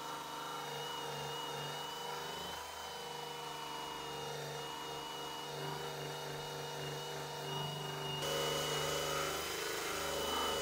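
Cordless drill running steadily at constant speed, spinning a rubber decal-eraser wheel against a painted truck door to strip vinyl lettering; a steady motor whine with the wheel rubbing on the panel. The tone changes suddenly about eight seconds in.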